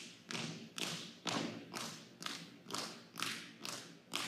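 Color guard's marching footsteps striking a hardwood gym floor in unison, about two steps a second, each step echoing in the large hall.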